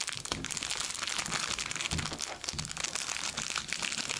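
Clear plastic wrapper around a trading card crinkling as it is handled, a steady run of small irregular crackles.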